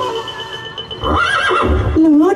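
A horse-like whinny over the stage loudspeakers: one high, wavering call that rises and falls, starting about a second in.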